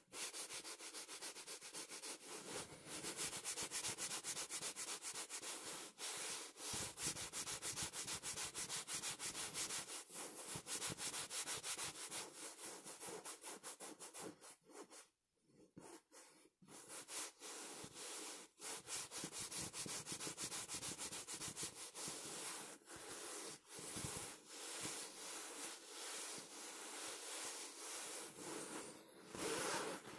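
Fingers scratching and rubbing the surface of a printed fabric pillow in fast, repeated strokes, with a brief pause about halfway through.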